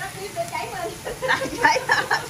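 Indistinct voices talking, busier in the second second; no other sound stands out.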